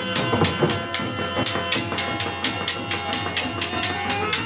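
Live folk-theatre accompaniment: a harmonium holding steady notes under a hand-played barrel drum and a fast, even run of sharp metallic strikes, several a second.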